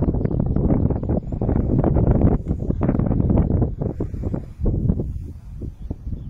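Wind buffeting the microphone: a loud, gusty rumble that eases off over the last couple of seconds.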